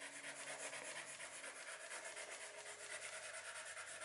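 Wax crayon rubbed lightly across paper in quick, even back-and-forth strokes, a faint dry scratching as a drawing is coloured in.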